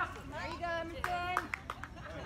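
Spectators' voices calling out. One call is held for a moment about a second in, and a few sharp claps follow near the end.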